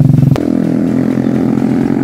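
A small engine running steadily, with a sharp click about a third of a second in after which its note shifts slightly.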